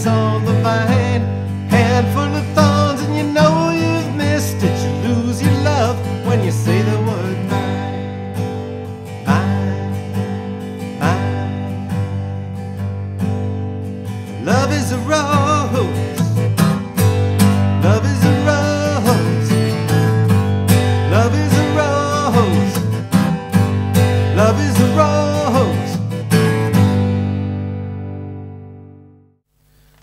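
A man singing to a strummed Epiphone steel-string acoustic guitar, a three-chord folk-country song in G. Near the end the strumming stops on a final chord that rings and dies away.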